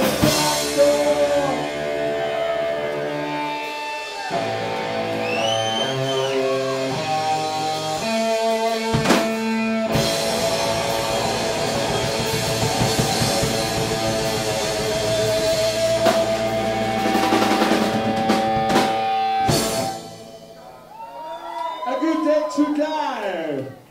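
Live horror-punk band playing: electric guitars and a drum kit, with no singing in this stretch. The band stops abruptly about two seconds before the end.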